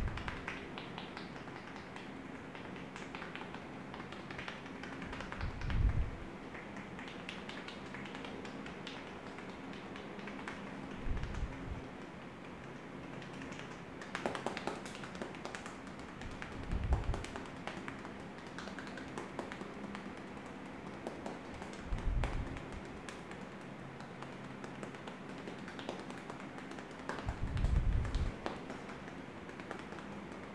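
Fingertips tapping rapidly and lightly on a man's scalp and hair in a tapping head massage, a continuous patter. A deeper thump comes about every five to six seconds.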